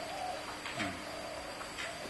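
A bird calling faintly in the background, a few low, steady-pitched calls.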